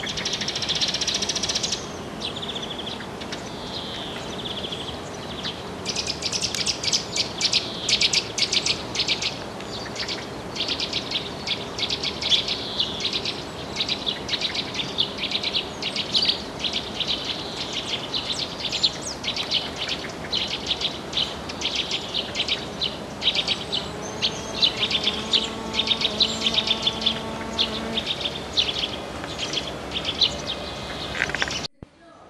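Garden songbirds chirping and singing in quick, dense runs of short notes, busiest from about six seconds in. A low steady hum with several tones joins in for a few seconds near the end.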